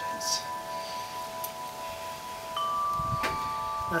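Wind chimes ringing: several clear metal tones overlapping and slowly dying away, with fresh strikes about two and a half seconds in.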